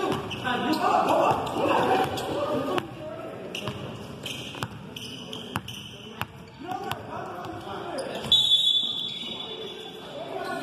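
A basketball dribbled on a hardwood gym floor, bouncing repeatedly, among shouting voices of players and spectators. A short high-pitched squeal comes about eight seconds in.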